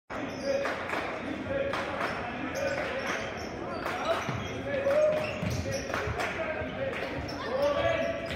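Basketball dribbled on a hardwood gym floor, a bounce roughly every half second to second, among players' calls and crowd voices in the gym.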